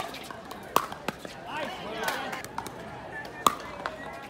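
Pickleball paddles striking a plastic ball during a rally: sharp pops at uneven intervals, three in the first second or so and one more about three and a half seconds in.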